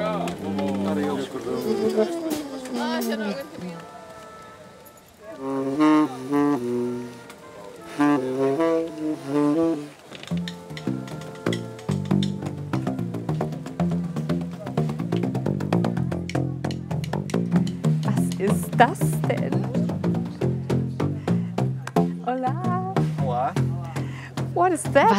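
Live brass band music: tuba and trumpet play sliding, falling notes and short phrases. From about ten seconds in, a steady rhythmic bass line of short notes with a click at each onset takes over, played on a homemade tubafon of red plastic pipes.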